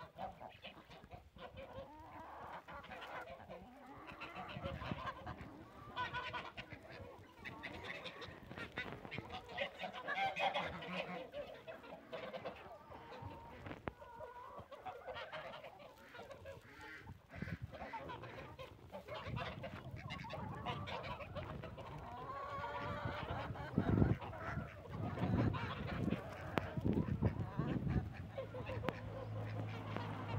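A mixed flock of domestic chickens and ducks calling and clucking while they feed, with frequent short clicks of pecking.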